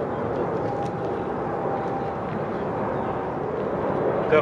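A steady outdoor background rumble with no clear rhythm or change, running under the pause in the reading.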